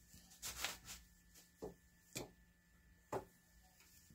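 Faint handling sounds at a floor loom's heddles. A brief rustle of threads comes early on and is the loudest part, then three sharp clicks about half a second to a second apart as the wire heddles knock together.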